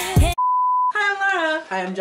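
A song with a beat cuts off, then a single steady high electronic beep sounds for about half a second, followed by voices singing.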